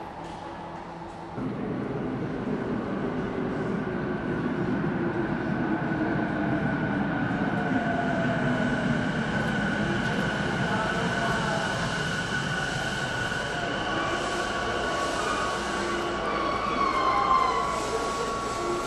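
Sotetsu 12000-series electric train pulling into the platform: a rumble of wheels sets in about a second and a half in, with steady high whining tones over it as it slows, and a brief louder squeal near the end as it draws up.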